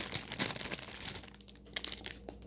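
Clear plastic zip bags of wax melts crinkling as they are handled. The crackle is busiest in the first second and thins out after.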